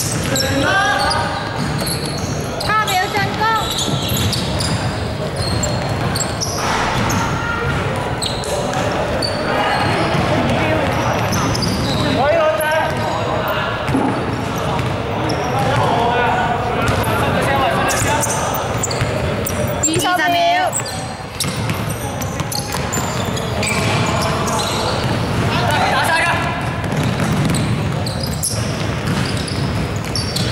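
Basketball bouncing on a wooden court floor during play in a large indoor hall, the dribbles and bounces coming as repeated short knocks, mixed with players' voices.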